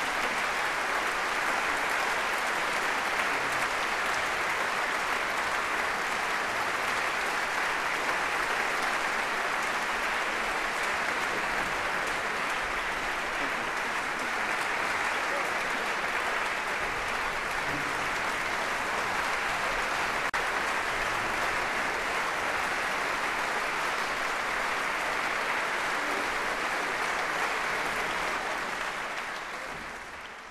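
Audience applause in a concert hall, steady and sustained, following the end of an orchestral performance.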